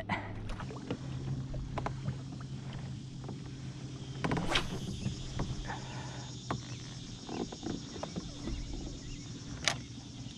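Kayak on choppy water: water lapping against the hull, with scattered knocks and clicks from the fishing gear and a steady low hum underneath.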